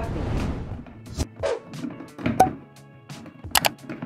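Plastic blender jar being set onto its motor base and handled, giving a few separate knocks and clicks over background music. There is a rush of noise in the first second.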